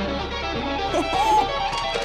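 Electric guitar playing, with a voice crying "oh" about a second in.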